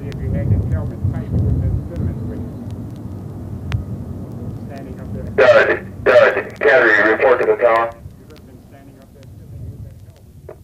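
Recorded military hand grenade training drill sampled into a rock track: a low rumble, then a loud shouted voice about five seconds in, lasting about two and a half seconds, before the sound fades out.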